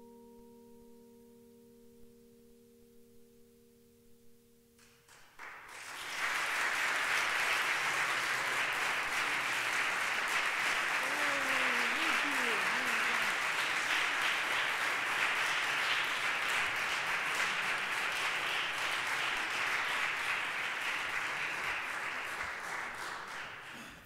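A vibraphone chord ringing and fading, cut off about five seconds in. Then audience applause with a couple of whoops, tapering off near the end.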